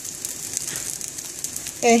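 Salmon patties frying in olive oil in a skillet on medium heat: a steady sizzle with light crackling of the oil. A voice comes in near the end.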